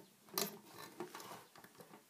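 Small handling clicks and scrapes of a metal hook and rubber bands against the plastic pegs of a Rainbow Loom as bands are hooked and lifted, with one sharper click about half a second in.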